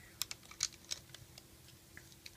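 Light, irregular plastic clicks and taps of Rainbow Loom pegs and base plates being handled and shifted forward on the loom, about half a dozen in two seconds.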